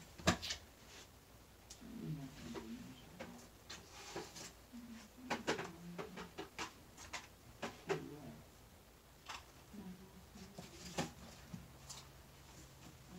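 Faint scattered knocks and clicks of things being handled and moved out of sight, with a low muffled murmur in between, as a coin storage box is fetched from another part of the room.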